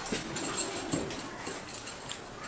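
Faint clinks and small clicks of a chain and leather wrist restraint being handled and fastened.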